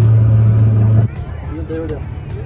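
Motorboat engine running with a steady low drone, dropping abruptly to a quieter run about a second in as it is throttled back.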